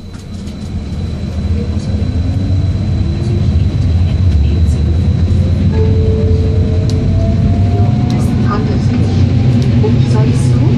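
Vienna U6 Type T1 train pulling away from a station, heard from inside the car: the running noise grows louder over the first few seconds as it accelerates, with a motor whine slowly rising in pitch.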